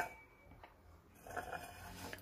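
Stainless steel pot being set down on a granite countertop: a short clink at the start, then near silence, then faint handling sounds in the second half.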